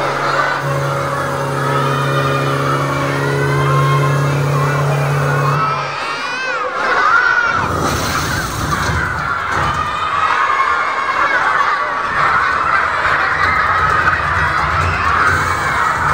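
A crowd of children shouting and cheering, with a steady low hum under the first six seconds.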